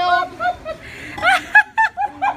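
A woman laughing in short, high-pitched bursts, loudest in the second half.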